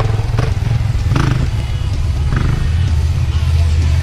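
Dirt bike engine running at trail speed, with scattered knocks and clatter from the rough ground.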